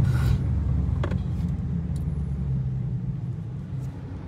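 Dodge Challenger R/T's 5.7-litre HEMI V8, heard from inside the cabin as a low, steady rumble at low speed that fades as the car slows. A light click comes about a second in.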